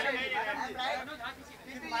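Only speech: photographers calling out directions over one another, 'ma'am, here, down'.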